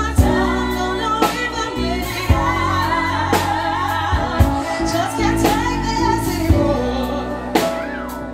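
Live pop-soul band playing: a lead and a backing female singer sing over drums, bass, electric guitar and a Nord Electro keyboard, with a drum hit landing about once a second.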